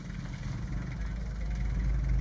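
Low, steady rumble of an idling vehicle engine, growing gradually louder.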